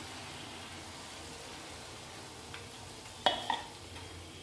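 Malpua batter frying in hot oil in a pan, a steady sizzle, with two sharp clinks a little after three seconds in.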